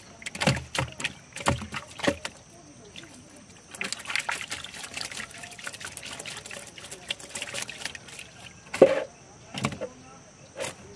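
A freshly caught fish flapping and knocking against the bottom of a wooden boat: several sharp thumps in the first two seconds and a loud one near the end, with water splashing and trickling in between.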